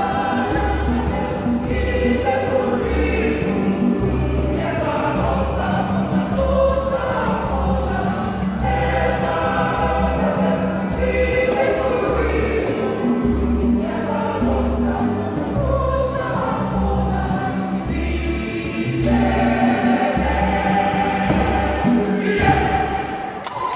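An African choir of men's and women's voices singing a traditional medley in harmony over a steady low beat.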